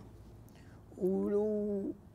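A man's drawn-out hesitation sound, a single steady held vowel starting about a second in and lasting about a second.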